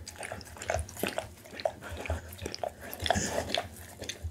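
Pit bull lapping liquid from a hand-held glass bowl: a quick run of wet tongue laps and clicks, about two or three a second.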